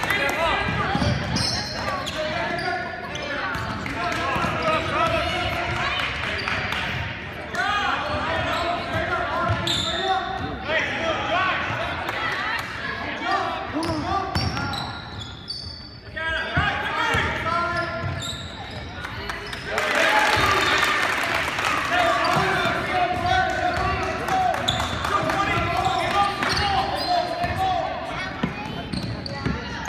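Basketball game sounds in a gym: a basketball bouncing on the hardwood floor amid the voices of players and spectators calling out through most of it. The voices get louder again after a short lull just past the middle.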